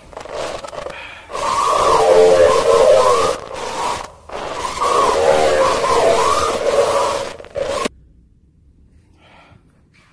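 Loud hissing static with warbling tones running through it, broken by a few short gaps, cutting off abruptly about eight seconds in.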